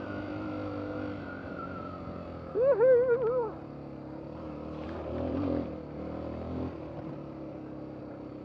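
Suzuki DR-Z250 single-cylinder four-stroke dirt bike engine running at light, steady throttle on a trail. Its pitch sags slowly at first and picks up briefly around five seconds in. A short voice sound, like a brief call, comes about three seconds in and is the loudest thing heard.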